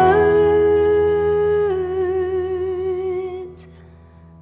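A female singer holds the last sung word of the song, "words", over a sustained piano chord. The note steps down about a second and a half in and fades with vibrato, ending on a soft "s" about three and a half seconds in. The piano chord rings on quietly after the voice stops.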